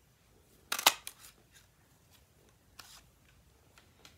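Handheld paper punch pressed down once, a loud sharp snap as it cuts a label shape from cardstock, followed by a few lighter clicks and a softer click near three seconds.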